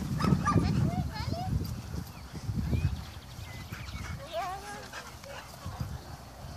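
A group of dogs playing together, giving short yips and barks, louder in the first second and a half.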